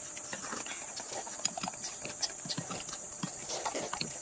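A toddler eating with a spoon from a metal bowl: irregular light clicks and knocks of the spoon against the bowl and of chewing, over a steady high chirring of crickets.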